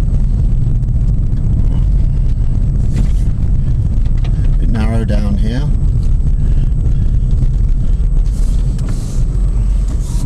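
Car engine and tyre noise heard from inside the moving car's cabin, a steady low rumble.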